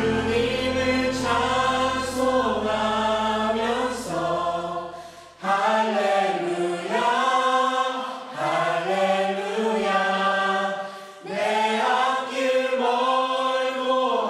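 A small worship team of men's and women's voices singing a Korean praise song together in phrases. Underneath is a low sustained instrumental backing that fades out about five seconds in, leaving the voices nearly unaccompanied.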